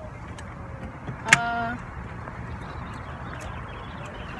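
Steady low rumble of a car's engine and cabin, heard from inside the car. About a second in there is a sharp click, followed by a short steady tone lasting under half a second.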